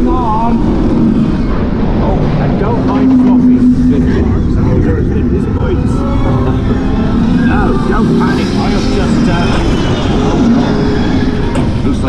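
Steel roller coaster train running at speed along its track: a steady loud rush of wind and track rumble over the camera microphone, with riders' voices rising above it in places.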